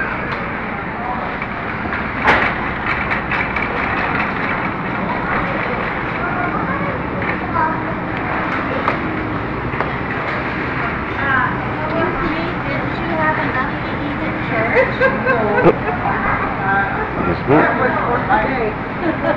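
Supermarket ambience: indistinct voices of other shoppers over a steady background noise, with scattered clicks and rattles.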